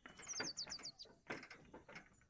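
A small bird calling: one high falling note, then a quick run of about five short high notes, all in the first second. Irregular clicks and knocks run underneath.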